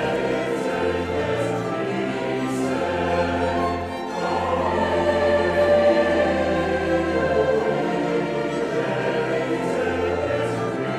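Large mixed choir singing classical sacred music with instrumental accompaniment over a sustained bass line that changes note every second or two. The sound dips briefly about four seconds in, then swells louder.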